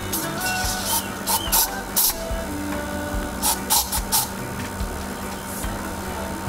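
Aerosol insect spray sprayed in a series of short hissing bursts, some in quick succession, to keep mosquitoes off.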